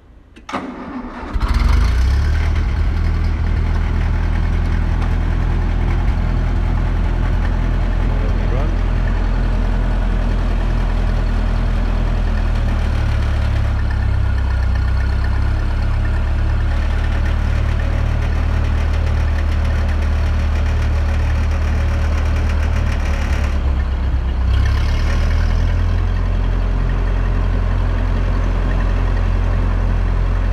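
1958 Ferguson FE35 tractor engine starting: a brief crank, catching about a second and a half in, then running steadily at idle. The note shifts slightly about 24 seconds in.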